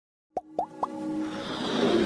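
Intro sound effects: three quick pops that each glide up in pitch, about a quarter second apart, followed by a whoosh that swells steadily toward the end.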